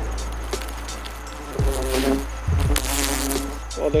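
Bald-faced hornets buzzing as they fly out of their disturbed nest, in two drawn-out buzzes passing close, with scattered clicks of the hedge's twigs being poked.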